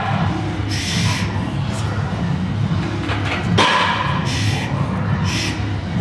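About five short, sharp, forceful breaths from a powerlifter bracing under a heavily loaded squat bar before unracking it, with a single knock about three and a half seconds in.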